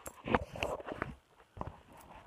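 A phone being handled and set back onto a makeshift stand: a series of knocks and rubbing close to its microphone, the loudest about a third of a second in.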